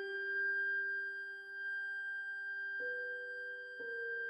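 Flute holding one long, steady high note while a grand piano sustains chords beneath it; the piano strikes two new chords about three seconds in and near the end.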